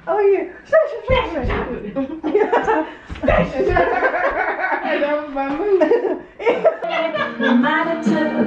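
Women's voices talking and laughing together, with music playing; the music comes more to the fore near the end.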